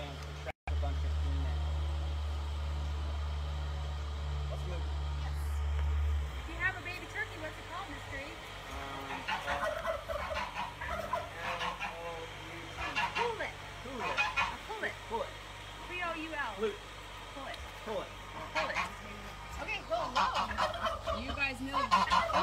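A male turkey gobbling in short bursts, with other barnyard fowl calling, from about eight seconds in. A low steady hum fills the first six seconds and cuts off suddenly.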